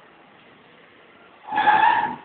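A board marker squeaking briefly across a writing board, one squeal about half a second long near the end.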